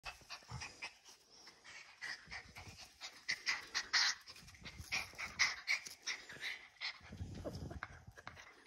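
Small shaggy terrier-type dog panting quickly and breathing close to the phone's microphone, with a short low rumble near the end.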